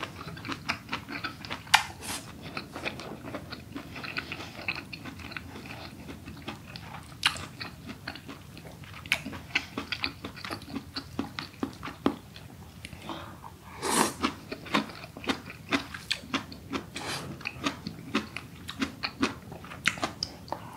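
Close-miked chewing of braised aged kimchi and pork with rice: quick, wet mouth clicks and smacks in steady succession, with a louder cluster about 14 seconds in.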